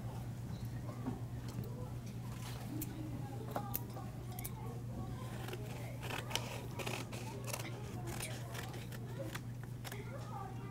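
Scissors snipping through a sheet of paper: a run of short, crisp cuts, most of them bunched in the middle few seconds.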